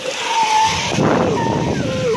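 A plastic children's bath whistle, partly filled with water, being blown. First a breathy hiss with a wavering whistle tone, then short warbling notes that bend up and down; the pitch depends on how much water is in the tube.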